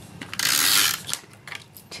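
Handheld adhesive tape runner pressed and drawn along the back of a cardstock panel: one ratcheting stroke of about half a second, followed by a couple of faint clicks.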